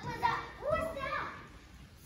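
A child's voice speaking briefly in the first second or so, then quieter room tone.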